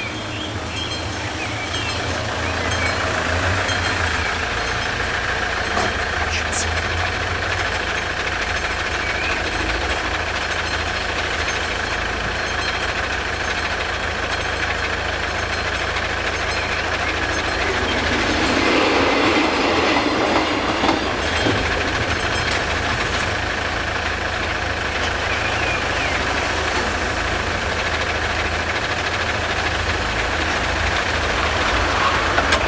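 Road vehicles idling in the queue at a level crossing while the crossing's classic warning bell rings on steadily. There is a louder sharp start about a second and a half in, and a swell of louder sound a little past the middle.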